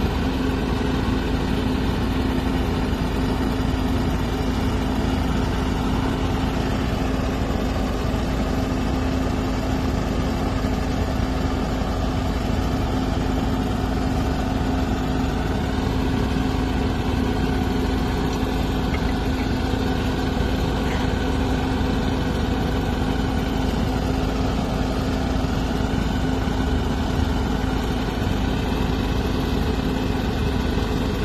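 Engine of a compact 10x15 horizontal directional drilling rig running steadily with a constant hum while the rig drills.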